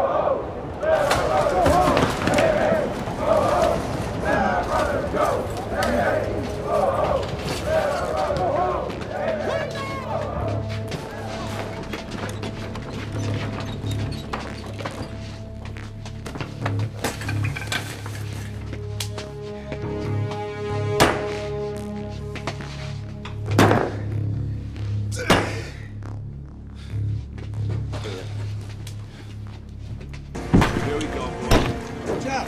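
Film soundtrack mix: indistinct raised voices for the first ten seconds or so, then a tense music score over a pulsing bass. In the second half, three loud hits cut through it.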